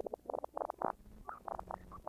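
Reel-to-reel tape machine running, its tape giving a rapid, uneven string of short squeaky chirps over a low hum.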